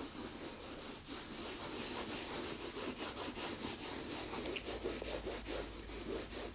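A leather-care instant-shine wipe rubbed back and forth over the coated monogram canvas of a vintage Louis Vuitton Speedy handbag, in quick repeated strokes.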